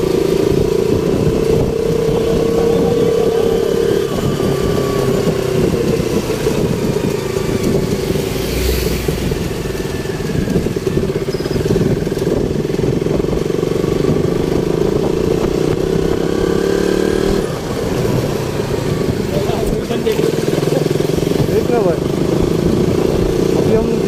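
Motorcycle engine running steadily while riding in city traffic, a continuous drone that dips briefly about two-thirds of the way through.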